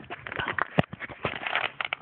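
Firework cake crackling: rapid, irregular sharp pops, with one louder crack near the middle.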